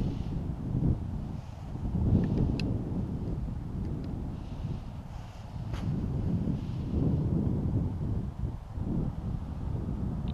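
Wind buffeting the microphone: an uneven low rumble that swells and drops in gusts, with a couple of faint ticks.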